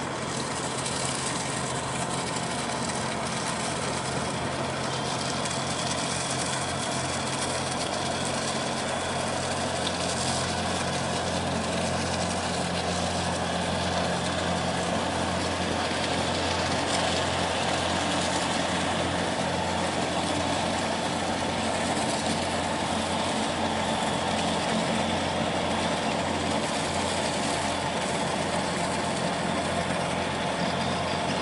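Diesel engine of a passing river container barge running steadily, a low drone that grows slightly louder as the stern and wheelhouse come alongside.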